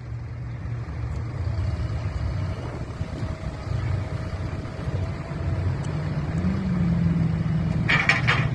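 Rear-loading garbage truck's diesel engine running steadily as its hydraulic bin lifter works, with a faint thin whine in the first half. The engine pitch rises about six and a half seconds in as the lifter raises a wheelie bin, and there is a clatter near the end as the bin tips into the hopper.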